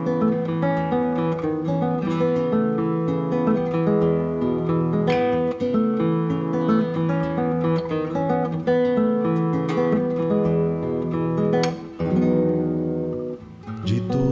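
Nylon-string classical guitar playing solo, a continuous run of plucked notes and chords, with a short dip in level shortly before the end.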